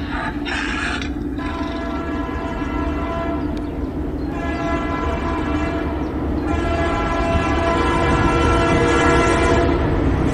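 Train horn sounding three long blasts over the low rumble of an approaching train, the rumble growing louder toward the end.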